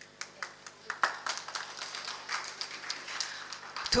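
Scattered audience applause: many separate hand claps that start just after the speaker stops and grow denser about a second in.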